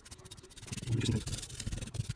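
Paintbrush scrubbing fluid acrylic paint across a rough, cracked crackle-paste surface, a few irregular rubbing strokes.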